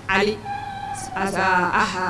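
A woman speaking into a microphone.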